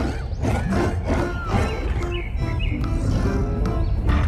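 Monster-film soundtrack: dramatic music over a heavy low rumble, with giant-ape creature growls mixed in.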